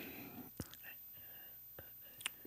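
A quiet pause in conversation: faint breathy sounds, with two soft clicks, one about half a second in and one near the end.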